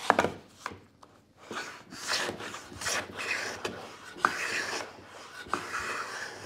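Bench plane run on its side along a shooting board, shearing shavings off the sawn end of a spalted beech board in a series of scraping strokes about one a second. A few sharp knocks come between strokes, one of them right at the start.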